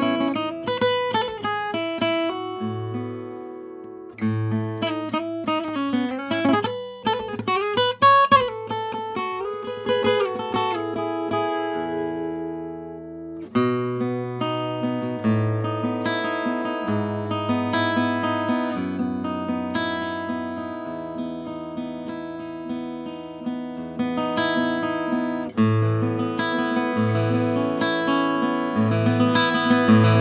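Samick GD-101 dreadnought acoustic guitar, new from the box, played with a nylon pick: an improvised run of single picked notes and strummed chords, with a few bent notes about eight seconds in. Twice the playing pauses and the notes ring out, about two and twelve seconds in.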